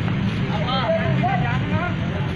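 Men's voices calling out to one another, over the steady low rumble of an idling truck engine.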